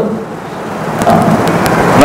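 A man's lecturing voice, amplified through a headset microphone: a brief pause filled with a faint hiss, then he speaks again quietly from about a second in.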